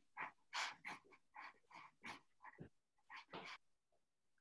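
Pen scratching on watercolour paper in short, quick strokes, faint and irregular, a few strokes a second with brief gaps.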